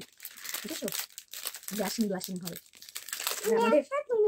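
Plastic chocolate wrapper crinkling in several bursts as it is handled and pulled at, with short bits of a child's and a woman's voice between.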